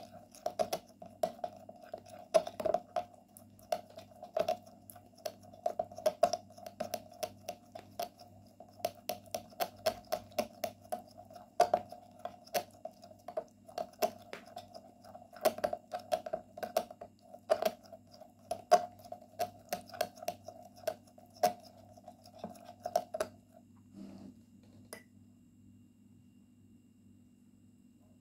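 A small spoon stirring a thick mix of honey and oils in a cut-glass bowl, clinking and tapping against the glass several times a second, stopping a few seconds before the end. A steady hum runs behind it.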